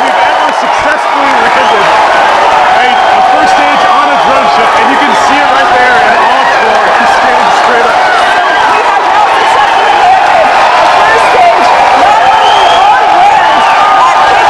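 Loud, sustained cheering and shouting from a large crowd, many voices at once, celebrating the Falcon 9 first stage's successful landing on the droneship.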